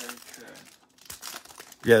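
Thin plastic wrapper of a small trading-card pack being torn open and crinkled by hand: faint, irregular crackling with a few sharper crackles about a second in.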